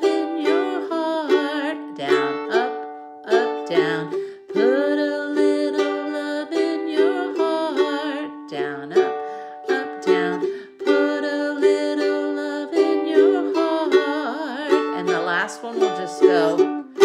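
Carbon-fibre ukulele strummed in a steady rhythm of chords, with a woman singing along over it.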